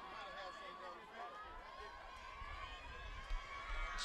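Faint stadium crowd murmur with distant voices. A low rumble comes in during the second half.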